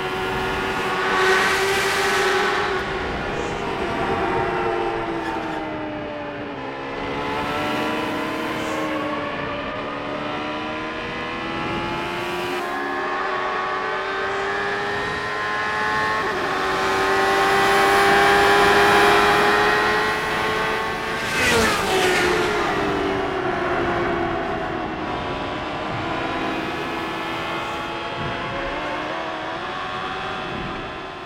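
Indy car's turbocharged V8 engine running at high revs on an oval, its pitch sliding down and back up with the throttle. Cars pass close by with a rush of noise about two seconds in and again about 21 seconds in, the note dropping in pitch as the second one goes by.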